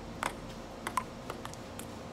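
Table tennis ball clicking off the paddles and the table during a rally: about five sharp clicks at uneven spacing.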